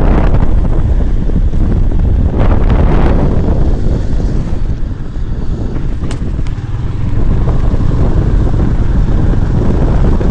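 Wind buffeting a phone's microphone on a moving motorcycle, a heavy low rumble with the ride's road and engine noise underneath. It eases for a couple of seconds about halfway through, then picks up again.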